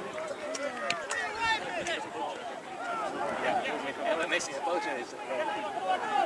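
Indistinct shouting and calling of several men's voices across an open football pitch, overlapping with no clear words, with a couple of short sharp knocks, about a second in and again past four seconds.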